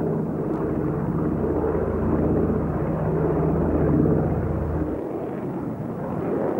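Propeller aircraft's piston engines droning steadily in flight, a low pitched hum with a rough edge. The deepest part of the drone drops away about five seconds in.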